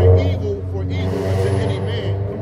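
A motor vehicle engine running at idle, a steady low hum, with men's voices over it.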